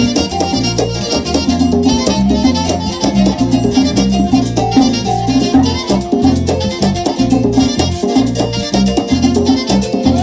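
Live Latin dance band playing an instrumental passage: a metal güira scraped in a steady driving rhythm over drums and a pulsing bass line.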